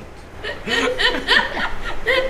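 People chuckling and laughing in short bursts, starting about half a second in.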